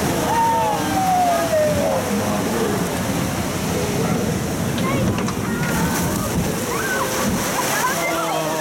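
Water rushing and sloshing steadily around a log flume boat as it moves along its water channel. A voice glides down in pitch near the start, and other short voices come in later.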